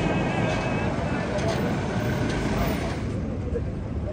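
Busy town street: a steady mix of traffic and people's voices.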